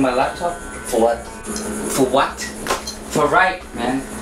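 Men's voices talking in short phrases, with a few brief handling clicks between them and a steady low hum underneath.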